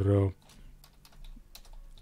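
Quiet typing on a computer keyboard: a run of light key clicks lasting about a second and a half, after a brief spoken 'uh'.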